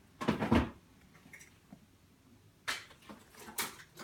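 Handling noises around a wooden box holding a plastic bag of ashes: a heavy, noisy bump just after the start, then two short sharp knocks or rustles near the end.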